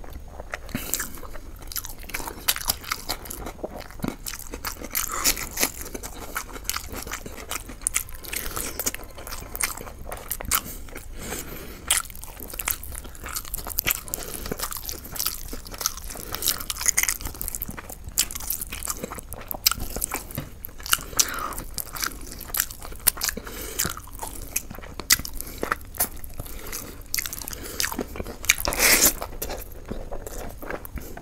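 Close-miked eating of chicken leg curry: steady wet chewing and biting with many sharp crunches and clicks, and a louder crunch near the end.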